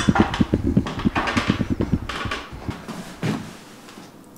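A man climbing up onto a timber loft floor: a quick run of knocks and thumps of feet, hands and body on the wood, with heavy panting, settling to quiet near the end.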